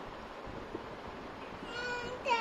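A cat meowing: a drawn-out call begins near the end, over a faint steady background hiss.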